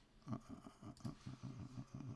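A man's low voice, faint and without clear words, in short broken bits.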